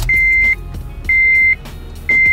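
Honda Civic's dashboard warning chime beeping twice, a steady high tone about half a second long repeating once a second, with the ignition on while the refitted instrument cluster is tested.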